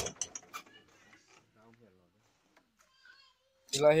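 Near silence: quiet room tone with a few faint clicks, and speech resuming near the end.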